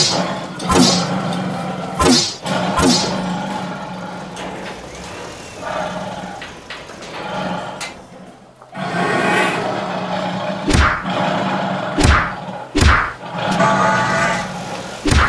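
Cartoon-style punch sound effects: quick swooshing hits, each falling in pitch and ending in a thud, four in the first three seconds and three more from about eleven seconds in. They sit over steady background music that drops out briefly a little past the middle.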